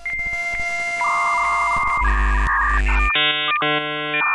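Short electronic music jingle of held synthesizer tones, the chord changing about every second.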